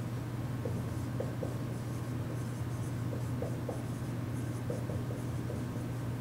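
Dry-erase marker writing on a whiteboard: short squeaks and scratchy strokes as words are written, over a steady low room hum.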